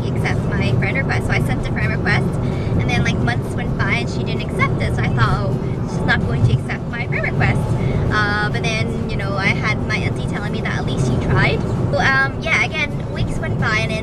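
A woman talking inside a moving car's cabin, over steady low road and engine noise.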